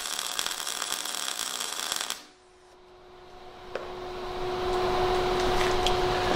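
MIG welding arc from an Everlast iMig 200 crackling steadily for about two seconds, then stopping suddenly. A quieter steady hum follows.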